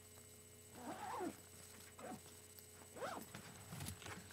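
A person's voice, off to one side: three faint, short, wordless sounds about a second apart, each rising and then falling in pitch.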